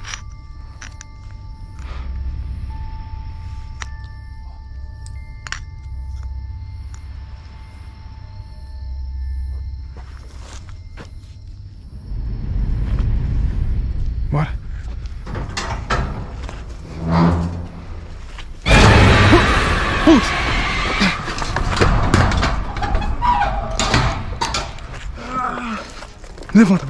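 Eerie background music with long held tones, then a sudden loud crash about nineteen seconds in: a man slamming against a corrugated sheet-metal door and falling to the ground, followed by a loud scuffling commotion.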